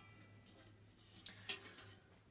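Near silence: faint room tone with a low steady hum, and two small handling clicks about one and a half seconds in.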